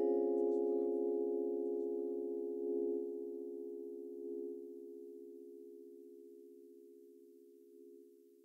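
A held synthesizer chord of several steady low tones ringing out as the track ends, slowly fading away, with its higher notes dying out first.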